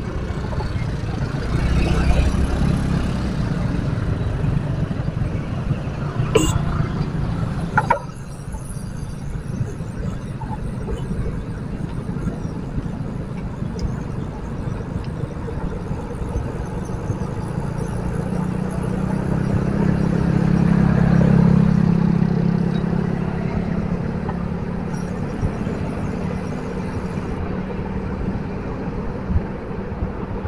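Low, rushing wind noise on the microphone with road noise from riding a bicycle in a group of road cyclists, swelling for a few seconds about two-thirds of the way through. Two sharp knocks come about six and eight seconds in.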